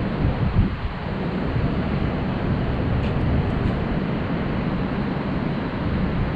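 Wind rushing and buffeting on the camera microphone, a steady low rumbling noise that rises and falls slightly.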